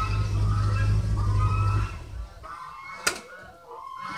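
Ford pickup truck engine running steadily with a low hum, then shut off about two seconds in. About a second later comes one sharp click, the truck's door latch opening.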